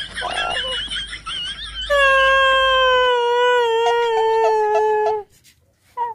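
A man's exaggerated screaming wail of pain: wavering high cries at first, then one long drawn-out cry falling slightly in pitch that cuts off about five seconds in.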